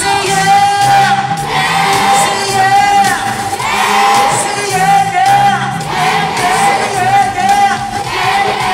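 Live amplified pop concert music in a large arena: a band playing with a singing voice and a held wavering high note, while the audience shouts and cheers along.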